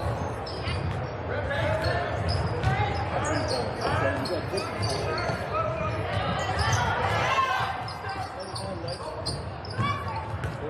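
Basketball game sounds in a gym: a ball bouncing on the hardwood court in repeated sharp knocks, with voices of players and spectators calling out.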